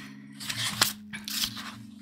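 Paper sketchbook pages being turned by hand, rustling in short sweeps, with one sharp click a little before the middle.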